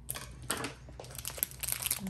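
Crinkling of a small plastic mystery-bag wrapper being handled by fingers, in scattered short crackles.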